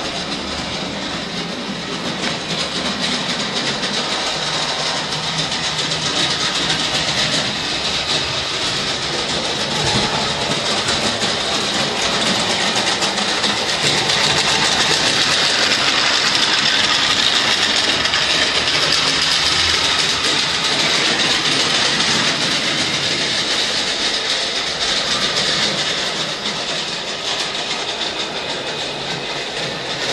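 Model electric trains running on a layout: a steady whirr of small motors and wheels clattering over the track, louder in the middle as a high-speed train model passes close by.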